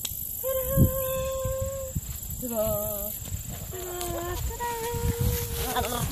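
A person singing or humming a few long, level notes in a sing-song voice, over a steady low rumble on the microphone, with one soft thump just under a second in.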